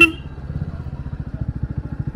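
Royal Enfield Bullet's single-cylinder four-stroke engine running on the move with an even, rapid exhaust beat. A sharp clack right at the start is the loudest moment.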